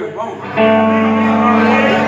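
Live rock band with electric guitars and bass playing; the sound drops briefly at the start, then held chords ring out again from about half a second in.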